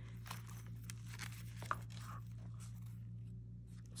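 Faint rustling and light taps of a handmade paper journal being handled and opened, its pages and ribbon brushing, over a steady low hum.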